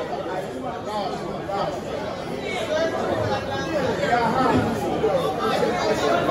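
Several people talking at once: overlapping chatter with no clear words, getting somewhat louder in the second half.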